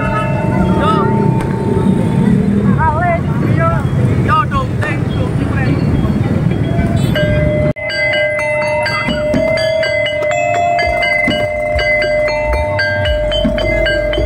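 Street procession noise: motorbike engines running and crowd voices with music mixed in. After a cut about halfway through, amplified electronic music takes over: a held note under a quick, stepping melody.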